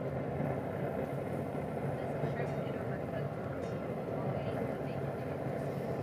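Traeger Ranger pellet grill running at 425°F: a steady low hum and hiss. A few faint light clicks come as skewered shrimp are set on the metal grate.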